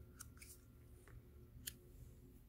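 A few faint clicks and snaps of laminated paper tarot cards being slid and laid down on a stack, the loudest near the end, over a low room hum.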